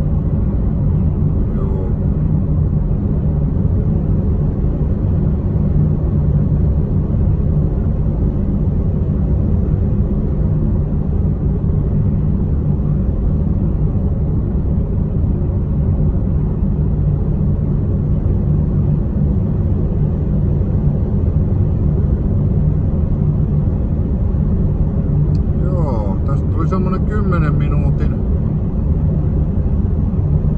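Steady low rumble of a car's engine and road noise inside the cabin while driving. A man's voice comes in briefly near the end.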